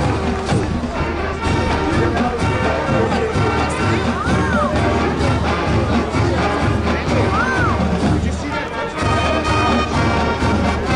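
Marching band playing the U.S. military service theme songs, brass over a steady drum beat.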